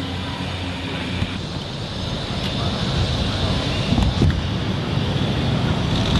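Steady outdoor background noise: an even hiss with a low rumble, slowly growing louder, with a couple of faint knocks about four seconds in.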